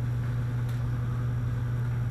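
A steady low hum with no change in level, and a faint light tick under a second in.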